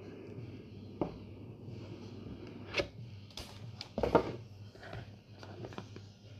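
A cardboard smartwatch box being handled and opened, lid lifted off: a handful of soft knocks and rustles, the loudest about four seconds in, over a steady low hum.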